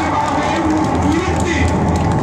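A song played loudly, a voice singing held, wavering notes over a dense backing, with crowd noise beneath.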